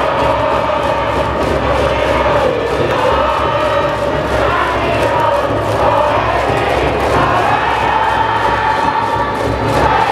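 High-school baseball cheering section performing a cheer: a brass band plays a melody over a steady drum beat, and a mass of students chant along.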